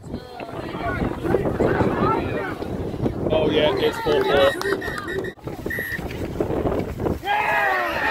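Several voices calling and shouting across a sports field, with wind rumbling on the phone's microphone.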